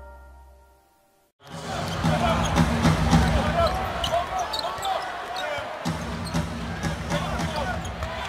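Arena sound of a basketball game: a basketball dribbled on the hardwood court with sharp bounces, short sneaker squeaks and a steady crowd hum. It starts about a second and a half in, after intro music fades to silence.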